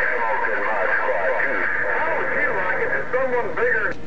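Distant voices coming in over a President HR2510 radio's speaker, thin-sounding and mixed with steady static, too garbled to make out.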